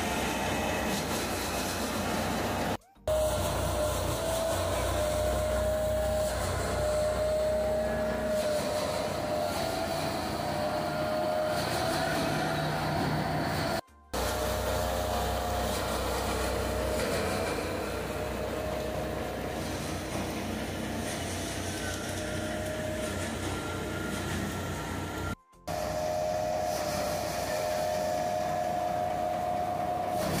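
A tractor-powered paddy thresher runs steadily as rice is threshed: the drum gives a continuous mechanical drone with a wavering whine over the engine's low hum. The sound cuts out for a moment three times.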